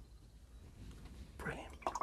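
Faint steady low hum, with a soft breathy murmur or whisper from the painter starting about one and a half seconds in.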